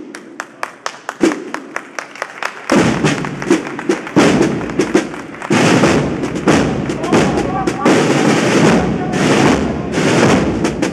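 Sharp clicks come about four a second, then about three seconds in a marching band's drum section starts loudly with snare drum rolls and beats, a few faint horn notes showing later.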